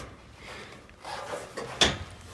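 Rustling and shuffling of someone climbing down through store shelving, then a single sharp knock near the end as something bumps against the shelving.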